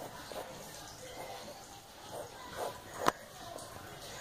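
Pencil lead scratching on paper in short, faint drawing strokes, with one sharp click about three seconds in.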